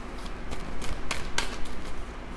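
A deck of oracle cards being shuffled by hand, the cards clicking and slapping against each other in quick, irregular strokes.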